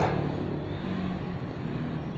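A motor vehicle's engine running steadily in the background, heard as an even noise with a low hum and no sharp events.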